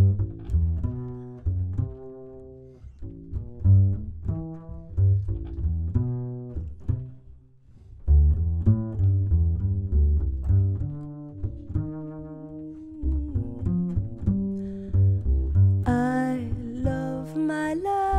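Upright double bass played pizzicato in a jazz solo: a run of plucked notes with a short pause about halfway through. A woman's singing voice comes in near the end.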